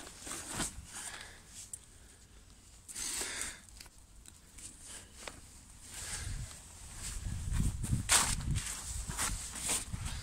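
Handling sounds of pegging out a nylon tent flysheet on grass: the fabric rustling, short scrapes and knocks, and footsteps. From about six seconds in it gets louder, with muffled low rumbling and thumps.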